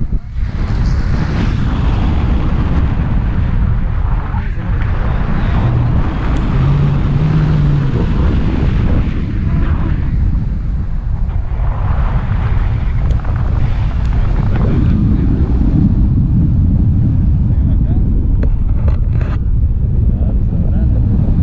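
Wind blowing across a pole-mounted action camera's microphone during a tandem paraglider flight: a loud, steady, mostly low-pitched buffeting.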